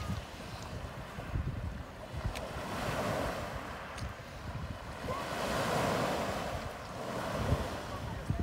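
Sea surf washing onto a shore, a steady rush that swells and ebbs twice, loudest about three and six seconds in.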